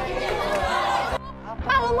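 Overlapping voices of a commotion, which cut off about a second in, followed by a woman's loud scolding voice.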